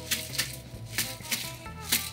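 Ice rattling inside a metal tin-and-glass cocktail shaker, with several sharp irregular knocks as the tin is handled and tapped to break its seal after shaking.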